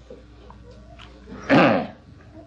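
A man's short voiced sound, falling in pitch, about one and a half seconds in. It sits over the steady low hum of an old lecture recording.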